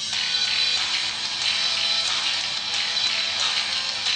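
A pop song playing from the HTC Butterfly smartphone's built-in loudspeaker, bright and thin with little bass.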